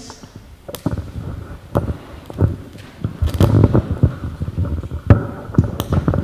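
Handheld microphone handling noise: about ten irregular thumps and knocks as the mic is picked up and passed along.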